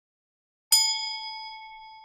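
A single bright bell ding about two-thirds of a second in, ringing out and fading slowly: the notification-bell chime of a subscribe-button animation.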